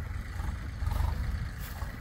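Low, uneven rumble of wind buffeting the microphone outdoors, with no clear engine tone in it.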